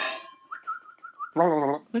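The ringing tail of an intro crash sound effect dying away, then a faint, short warbling whistle-like tone, then a man's voice starting to speak about a second and a half in.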